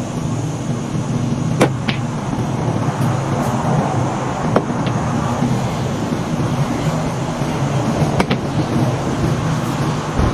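Pool balls clacking on a mini pool table: a few sharp clicks of cue tip on cue ball and ball on ball, one about a second and a half in, another a few seconds later, and a quick double click near the end. A steady low hum runs under them.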